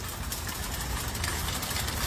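Steady low rumble and hiss of outdoor background noise picked up by a smartphone microphone in a car park.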